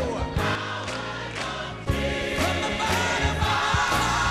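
Gospel choir singing over a live band with drums and bass keeping a steady beat, the choir clapping along.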